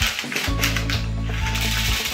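Small plastic beads rattling and clicking against each other as their bag is opened and tipped out. Background music comes in about half a second in.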